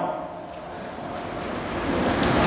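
A pause in a man's speech over a microphone, filled by a steady, even hiss of background noise that slowly swells toward the end.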